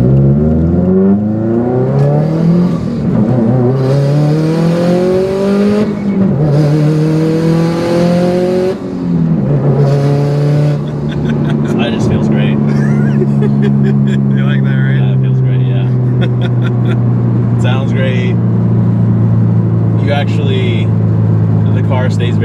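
Subaru WRX STI's turbocharged flat-four with an aftermarket exhaust, heard from inside the cabin as the car accelerates hard. The pitch climbs, drops at an upshift about six seconds in, climbs again and drops at a second shift, then settles about halfway through to a steady cruising note.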